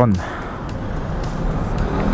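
Steady road traffic noise from passing cars, an even hum with no sudden events.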